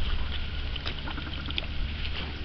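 Steady low wind rumble on the microphone over a faint hiss of outdoor noise.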